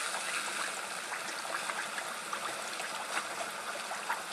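Hand-cut potato fries deep-frying in hot peanut oil, a steady sizzle with small crackles and pops.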